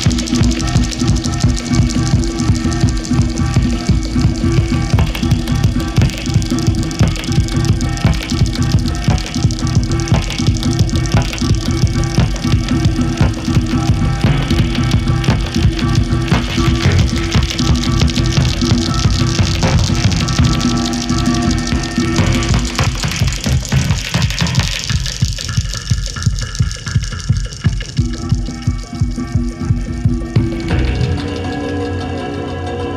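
Live techno played on homemade electroacoustic instruments, with piezo-miked spring boxes and scrap devices: a steady driving beat under a held low drone, with dense metallic texture on top. Near the end the middle of the sound thins out and the beat stands out more.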